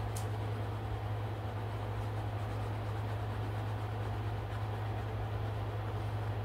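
Steady low hum under a soft even hiss, the constant background noise of a small room, with one brief click just after the start.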